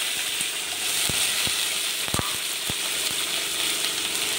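Whole shallots and green chillies sizzling steadily as they fry in hot oil in a kadai, with a few sharp knocks about one, one and a half and two seconds in.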